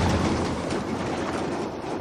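A semi-trailer truck passing close by on a highway, its rumble and road noise fading as it moves away.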